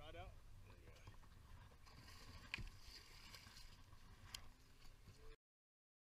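Faint low rumble of wind and water on a boat at sea, with two sharp clicks partway through; the sound cuts off abruptly near the end.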